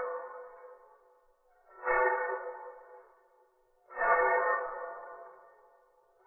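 A ringing, ping-like pitched tone that sounds about every two seconds, each one starting sharply and fading away over about a second and a half.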